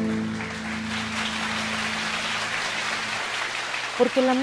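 The last chord of two harps ringing out and fading away over about three seconds, as steady applause rises up and fills the rest of the moment.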